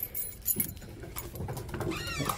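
A bunch of keys jingling briefly at the start, with a few light clicks after. Near the end a dog gives a short, high whine that falls in pitch.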